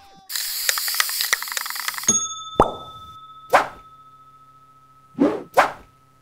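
Animated-logo sound effects: a short rush of noise, then quick upward-sweeping plopping pops, one about two and a half seconds in, another a second later, and two close together near the end, over a faint steady tone.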